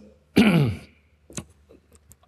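A man clearing his throat once, a short sound that falls in pitch, followed about a second later by a faint click.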